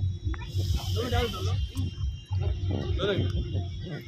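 People talking over loud party music with a steady pulsing bass beat. A short hiss sounds from about half a second in and lasts about a second.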